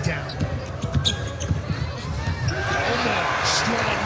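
A basketball dribbled on a hardwood court, with sharp bounces through the first half, over arena crowd noise that grows louder from about halfway through.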